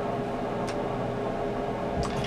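Steady room tone: an even hiss with a faint constant hum, and one soft tick a little after a third of the way through.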